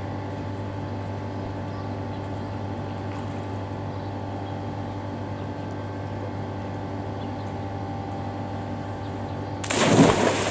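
A steady mechanical hum with a few fixed tones runs throughout. Near the end a person plunges feet-first into a swimming pool with a loud splash of water.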